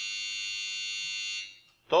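A steady high-pitched whine made of several held tones at once, at an even level, which cuts off about a second and a half in.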